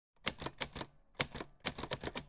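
Typewriter keys clacking: a run of sharp key strikes in uneven clusters, used as a sound effect as text appears on a title card.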